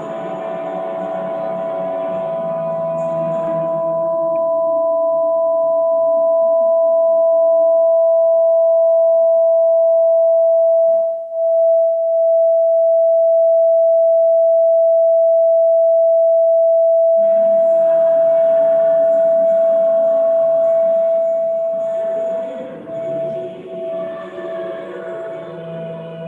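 A loud, steady high tone with a fainter higher tone above it. It swells over the first several seconds, holds level with a brief dip about halfway through, and sits over quiet music at the start and again near the end.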